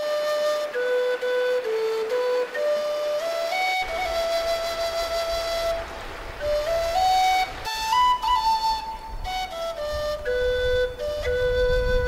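Background music: a slow melody of long held notes stepping up and down, with a low accompaniment joining about four seconds in.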